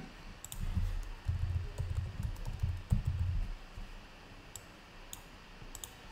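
A few scattered light clicks from a computer mouse and keyboard being worked, over low, uneven desk thuds that fade out about three and a half seconds in.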